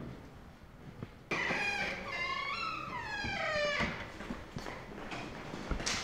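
A high, wavering wail starts suddenly about a second in and slides down in pitch over about two and a half seconds: an eerie horror-film sound effect. A few soft knocks follow near the end.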